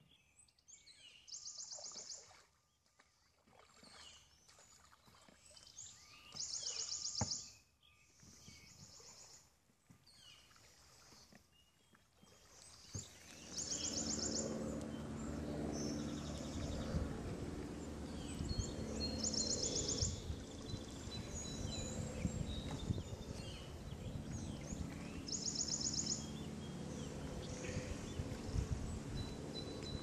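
Faint outdoor river ambience: a short, high, rapidly pulsed trill, typical of a bird, repeats about every six seconds. About 13 seconds in, a low steady background hum comes up and runs under the trills.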